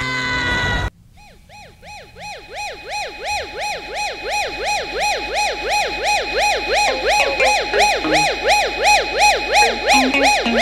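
A cartoon Minion's loud yell, cut off abruptly about a second in. Then a siren sweeps up and down about three times a second over a steady low tone, fading in and growing louder.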